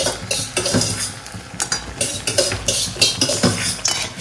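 Food frying in oil in a metal kadai, sizzling, while a spatula scrapes and knocks against the pan in quick irregular strokes.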